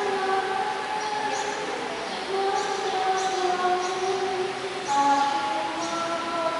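A slow hymn with long held notes that change pitch every second or two.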